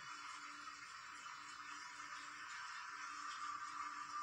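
Faint steady hiss of room tone, with a faint low tone underneath that comes and goes.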